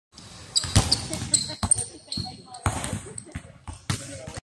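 Basketballs bouncing on an indoor gym court: irregular sharp thuds roughly a second apart, ringing in the hall, with brief high squeaks between them.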